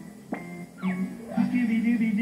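Cartoon music and sound effects from a television: a few quick sliding notes, then a held, wavering note from about a second and a half in.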